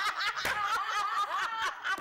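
Several women laughing hard together, high-pitched and overlapping, with no words.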